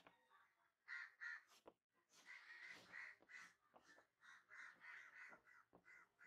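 Chalk strokes scraping on a blackboard as straight lines are ruled across a circle and letters are written. There is a run of short, faint, scratchy strokes about three a second, with a few sharp taps.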